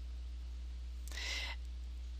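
Steady low hum of the microphone's background noise, with a soft intake of breath a little past a second in, just before speech resumes.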